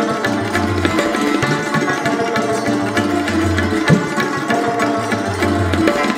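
Indian santoor struck with light hammers in a rapid run of notes, with an Afghan rabab plucked alongside. Tabla accompanies, its bass drum sounding repeated deep strokes.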